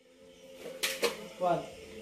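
Two sharp knocks in quick succession about a second in, the sound of hands striking an arm in a handgun-disarm move, over a steady hum. A man then calls out 'one' as the first count of the technique.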